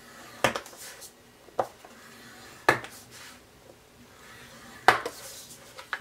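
Bone folder scoring cardstock along the grooves of a plastic scoring board: about six sharp clicks and taps, roughly a second apart, as the tip is set into grooves, with faint scraping strokes between them.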